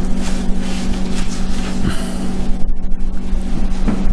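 Steady low hum with a constant hiss of background noise.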